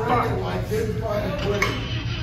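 Indistinct voices talking over a steady low hum, with a short metallic clink about one and a half seconds in.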